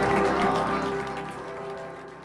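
A women's vocal group with ukulele holding a final chord that slowly fades away at the end of a song.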